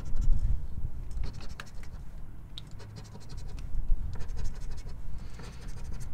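A coin scraping the silver latex coating off a paper scratch-off lottery ticket in short, irregular strokes, with a quieter lull around the middle.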